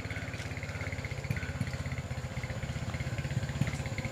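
Small motorcycle engine running at low revs, an even, rapid putter, as the bike is ridden slowly down a steep path.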